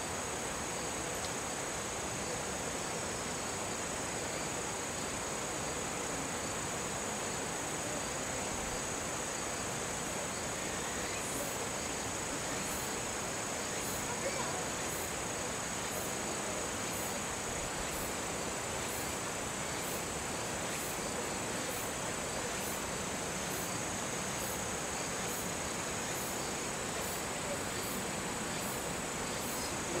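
A chorus of insects in the grass, trilling steadily at a high pitch. From about a third of the way in, a second insect adds evenly spaced high chirps, a little more than one a second.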